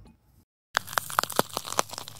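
A quick, dense run of sharp crackles and snaps, like crinkling or tearing, starting about three-quarters of a second in after a brief dead silence: a sound effect for an animated channel logo card.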